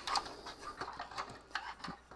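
Faint, scattered small clicks and light knocks of hands handling the metal hard-drive cage, drive sleds and cabling inside a server chassis.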